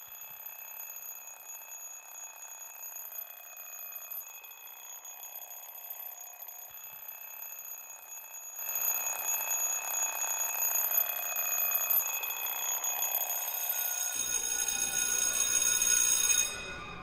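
A steady high-pitched ringing, several tones held together without a break, that grows louder about halfway through.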